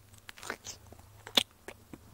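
A man biting into a pear and chewing it, a few short crisp crunches, the sharpest about one and a half seconds in.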